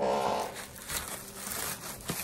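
A short loud sound right at the start, then rustling and crinkling of brown kraft packing paper as items are dug out of a shipping box.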